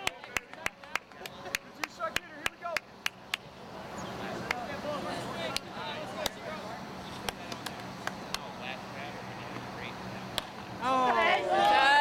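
Distant voices and chatter from players and spectators around a ball field. Over the first three seconds or so comes a quick run of sharp clicks, about four a second. Near the end, people close by start talking and cheering loudly.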